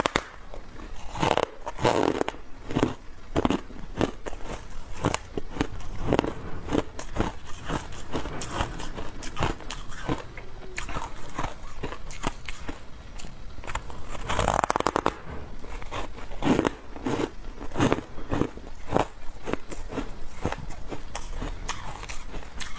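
Refrozen shaved ice being bitten and chewed close to a lapel microphone: a continuous run of sharp crunches and crackles. There is a louder bite about two-thirds of the way through.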